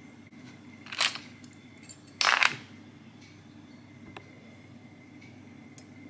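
Handling noise of small pieces of broken metal costume jewellery being put down and picked up: a short clatter about a second in, a louder, slightly longer one about two seconds in, then a few faint clicks.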